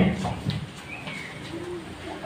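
Faint bird calls, a couple of short notes, over a steady low background hum.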